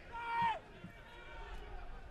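A brief distant shout whose pitch drops at the end, about half a second long, then faint open-air stadium background.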